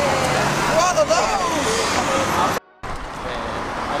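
City street traffic noise with a steady engine hum in the first second and a half and voices talking nearby. The sound drops out briefly about two and a half seconds in, then the traffic noise goes on a little quieter.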